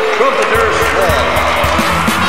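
Trailer soundtrack: a crowd applauding and cheering, with upbeat music and a regular drum beat coming in about half a second in, and voices over it.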